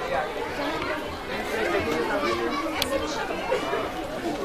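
Background chatter of many people talking at once, with overlapping voices and no single speaker standing out. A single sharp click comes about three seconds in.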